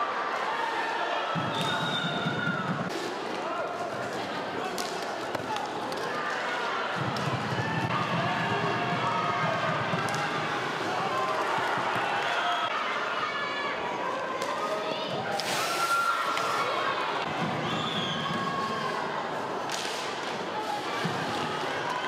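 Rink-hockey arena sound: many voices of the crowd and players talking and shouting in the hall, with sharp knocks of the hard ball and sticks against the boards now and then.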